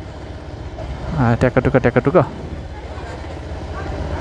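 A person's voice speaking briefly in the middle, over a steady low rumble of outdoor street background.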